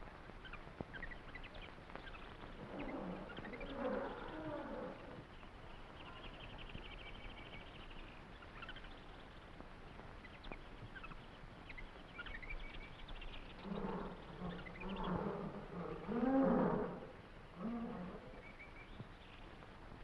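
Film sound effect of a large wild animal roaring and growling: a short bout a few seconds in, then a longer, louder bout in the second half. Jungle bird calls and chirps run faintly underneath.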